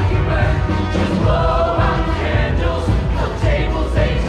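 A high-school show choir singing together over its live band, many voices in chorus above a heavy bass.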